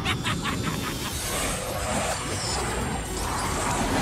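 Action score music mixed with animated sound effects of a flying mech blasting through a structure. A quick run of sharp hits comes at the very start, then a dense rush of effects and crashing plays under the music.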